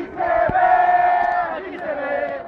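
Protest marchers shouting, with one long, loud held cry starting about half a second in and lasting about a second.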